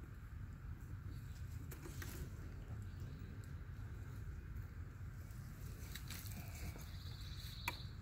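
Quiet woodland ambience with a steady low rumble, a few faint clicks and snaps, and a short bird trill about seven seconds in.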